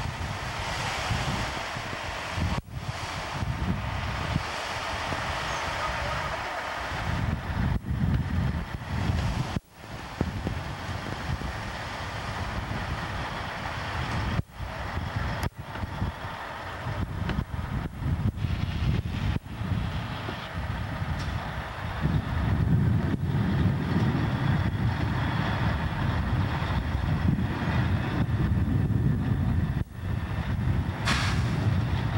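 Heavy construction machinery running on a building site: a steady engine rumble with ground-working noise, breaking off briefly several times at cuts, the low rumble growing heavier in the last third.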